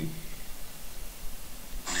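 Room tone between a man's words: a steady low hum under a faint hiss, with speech at the very start and again just before the end.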